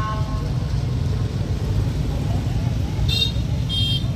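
Street traffic rumbling steadily, with a vehicle horn sounding and stopping about half a second in. Two short high-pitched beeps come about three seconds in, half a second apart.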